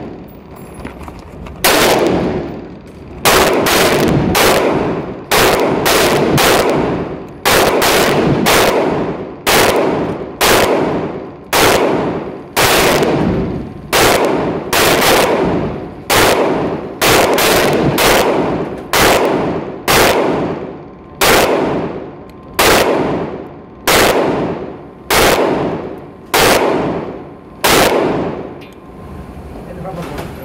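A Taurus PT111 G2 9mm pistol firing a long string of about two dozen shots at a steady, unhurried pace of a little over one a second. Each shot echoes briefly in the enclosed range. The shooting stops about two seconds before the end.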